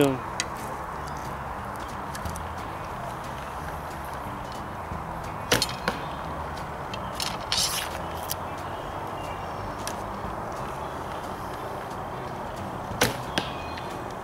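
Steady outdoor hiss of woodland air, broken by a few short sharp knocks: the loudest about five and a half seconds in, a few weaker ones a couple of seconds later, and two more near the end.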